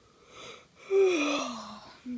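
A young child's breathy, drawn-out groan: a short breath, then a voiced sound sliding down in pitch for most of a second.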